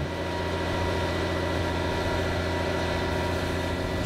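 Engine running steadily, a constant low hum with a thin, even whine above it.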